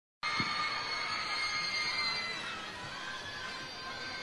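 A concert crowd cheering, with many high-pitched screams held over a dense roar. It cuts in suddenly just after the start and eases slightly after a couple of seconds.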